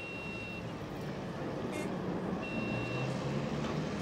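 Busy street noise of motor traffic and a crowd: a steady rumbling wash, with a high steady beep-like tone sounding briefly twice.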